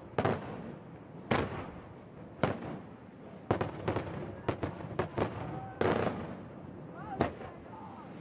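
Aerial firework shells bursting during a display: about ten sharp bangs at uneven intervals, some close together in the middle, each trailing off in a rolling echo.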